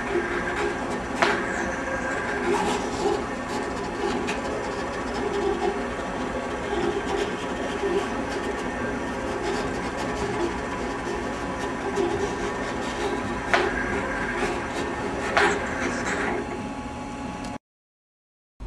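Roland GX-24 vinyl cutter running a contour cut, its servo-driven cutting carriage and grit rollers moving the blade and paper with a steady mechanical whirr and a few sharp clicks. The sound cuts off suddenly near the end.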